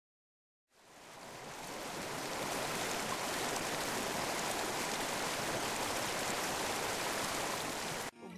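A steady, even rushing noise with the character of running water or hiss. It fades in after a moment of silence and cuts off suddenly at the end.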